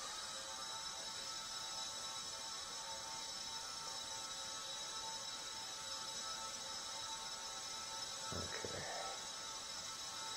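The 4 mm coreless motor and propeller of a micro RC airplane whine steadily in flight, several high tones held at one constant pitch.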